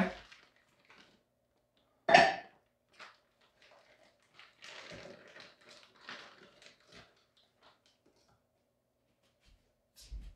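A short cough-like vocal sound about two seconds in, then scattered soft clatter and rustle of a fruit bag, bowls and a blender jar being handled at a kitchen counter, mostly between about four and seven seconds in.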